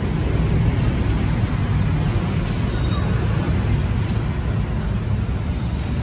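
A motor vehicle engine running steadily, a continuous low rumble with no revving.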